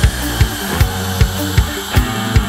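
Instrumental passage of a rock band's studio recording, no vocals: a drum kit with a steady kick about two and a half beats a second, under bass and guitar.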